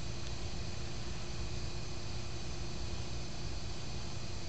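Steady room tone: a low rumble with an even hiss over it, unchanging throughout, with no distinct event.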